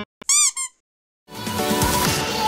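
A short, high-pitched squeak sound effect lasting under half a second, between a sudden cut in the music and electronic outro music fading in about a second and a half in.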